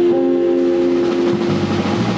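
Live instrumental jazz played by two guitars, bass guitar and drum kit. A chord is held for about a second and a half over the bass and cymbals, then the bass line moves on.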